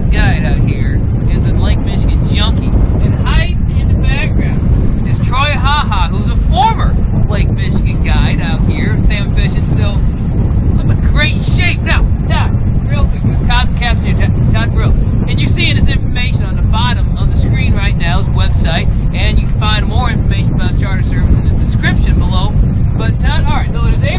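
A man talking over a loud, steady low rumble of wind buffeting the microphone on an open boat deck.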